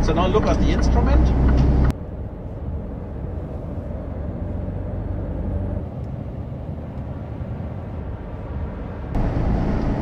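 Mercedes-Benz truck on the move: low engine and road rumble inside the cab, loud for the first two seconds, then a steadier, quieter rumble until near the end.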